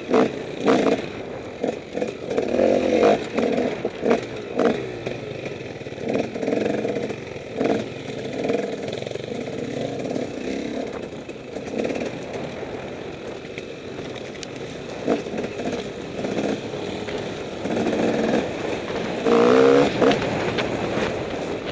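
Enduro motorcycle engine running on a rough dirt trail, its revs rising and falling over and over, with sharp knocks and rattles from the bike over the bumps. Near the end the revs climb steeply.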